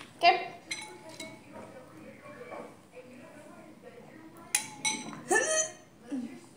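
Metal spoon clinking against dishes, with a few sharp, briefly ringing clinks about four and a half to five seconds in.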